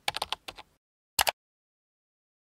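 Short logo-animation sound effect: a quick run of sharp clicks, like keys being typed, then a single louder click a little over a second in.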